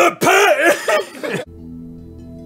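A man makes a strained, warbling vocal noise whose pitch wobbles up and down in quick humps. About one and a half seconds in it cuts off and gives way to steady, sustained ambient-music tones like a singing bowl.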